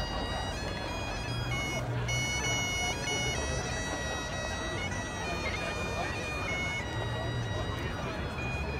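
Bagpipes playing a tune, the melody moving in clear steps from note to note, over the chatter of a large crowd.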